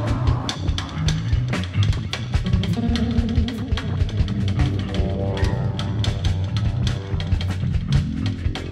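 Experimental rock band playing: a busy drum-kit beat with bass drum and snare over steady bass and guitar, with a held chord coming in about five seconds in.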